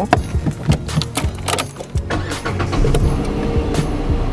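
Renault Kwid Climber's 1.0-litre three-cylinder petrol engine being started with the key: a few clicks, the engine catching and revving up about two seconds in, then idling steadily. Heard from inside the cabin, where only a little engine noise comes through.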